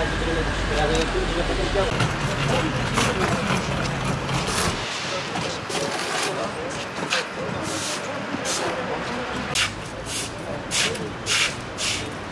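A broom sweeping wet paving stones in short, irregular strokes, about one a second, with voices and traffic running behind it until about five seconds in.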